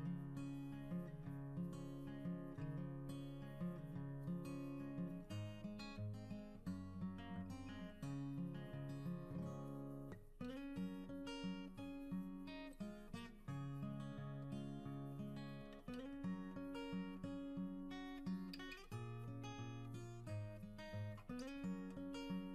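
Quiet background music: a plucked acoustic guitar playing a gentle melody over steady bass notes.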